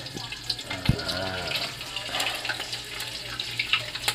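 Chopped garlic sizzling in hot oil in an aluminium pot, a steady frying hiss with many small scattered crackles.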